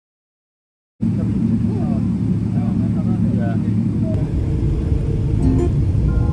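After a second of silence, a steady low rumble of airliner cabin noise during taxiing, with a few faint voices over it. Plucked guitar music comes in near the end.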